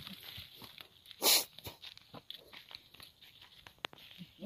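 Hands scraping and breaking up dry, cracked clay soil while digging out a hole, a string of small crunches and scrapes. There is one short, louder rasp about a second in and a sharp click near the end.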